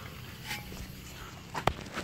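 Quiet background with a faint steady hum, a soft tick about half a second in and one sharp click near the end.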